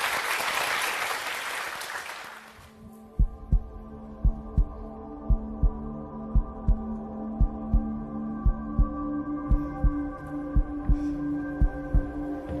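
Studio audience applause fading out over the first two or three seconds. Then show background music: sustained synth chords over a low double thump like a heartbeat, about one pair a second.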